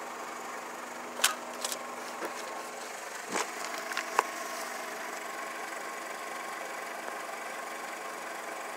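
A steady low mechanical hum runs throughout, with a few short clicks and rustles in the first half, from handling the camera and the manual.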